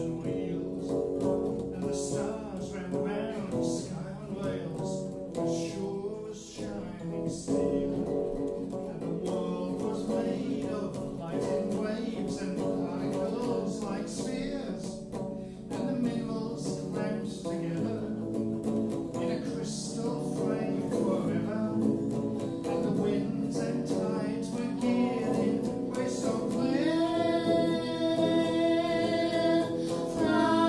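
Electric guitar picking a folk-rock song accompaniment with singing. Near the end a high, sustained woman's voice comes in over the guitar.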